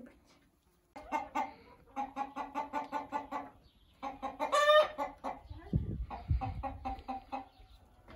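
Chickens clucking in a quick run of short clucks, about four a second. A little before the middle comes one longer, louder cackling call, followed by more clucking. A couple of low thumps sound about six seconds in.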